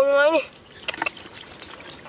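Hands working through wet mud and shallow muddy water, with a few brief wet squelches about a second in.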